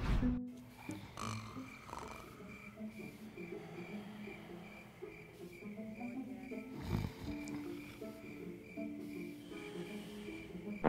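Soft background music of held low notes, with a faint high chirp repeating about twice a second. A short low thump comes about seven seconds in.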